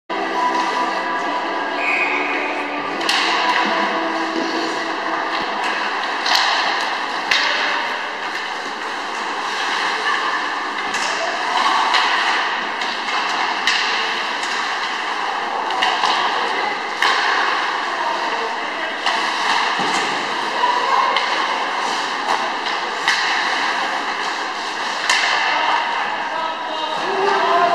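Ice hockey arena during play: a steady wash of skate and rink noise, punctuated every second or two by sharp clacks and thuds of sticks, puck and boards, with voices shouting.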